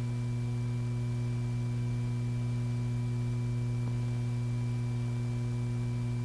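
Steady low electrical hum with a row of fainter, higher steady tones stacked above it: the mains hum on an old film's soundtrack.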